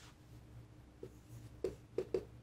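Marker pen writing on a whiteboard: a few short, faint strokes in the second half as a letter is drawn.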